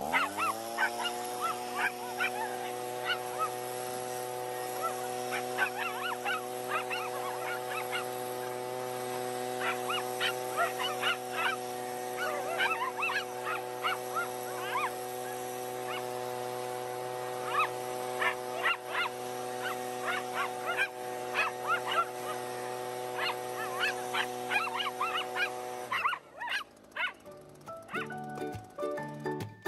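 Leaf blower spinning up to a steady whine right at the start, running evenly and then shutting off shortly before the end. Miniature schnauzers bark and yip in quick bursts around it throughout.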